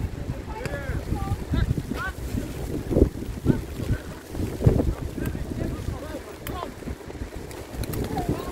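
Wind buffeting the microphone with a steady low rumble, and distant shouts from footballers on the pitch, mostly in the first couple of seconds. Two louder thuds stand out about three seconds in and again near the five-second mark.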